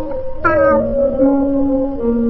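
A cat's meow, falling in pitch, about half a second in, over background music with held notes.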